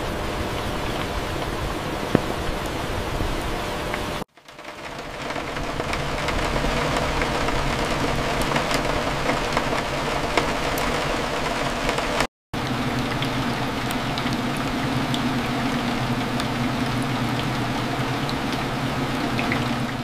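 Steady rain ambience: rain falling on windows as an even, continuous wash. It cuts out briefly twice, about four and twelve seconds in, and after the first cut it fades back in.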